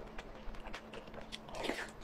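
Close-miked mouth sounds of a person biting and chewing soft food: irregular wet clicks and smacks, a louder one near the end.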